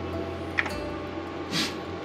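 Steady low hum of a portable power station and a Keurig coffee maker running under a 1400-watt load, with a light click about half a second in as a button on the power station is pressed, and a short hiss near the end.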